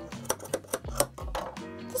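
Scissors snipping through a woven wall hanging's yarn fringe: a quick run of short, sharp snips over background music.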